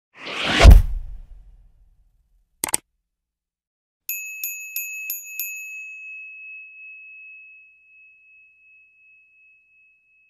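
Outro sound effects: a whoosh that builds into a deep boom, then a brief click, then a bell sound effect dinging five quick times, about three a second, with the last ding ringing out and fading.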